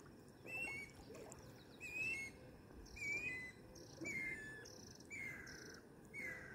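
A bird calling over and over, about once a second, each call a short high note that steps down in pitch. A faint steady outdoor hush runs underneath.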